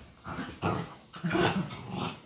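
Dachshunds play-fighting and growling in three short bursts, the last the loudest.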